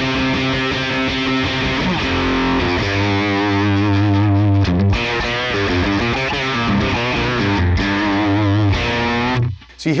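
Distorted electric guitar played through the Line 6 Helix A30 amp model alone, with no EQ, reverb or compressor, its channel and master volumes turned up high. Sustained chords and riffs with bent, wavering notes, with a grainy, gritty edge from the amp being pushed hard. The playing stops briefly just before the end.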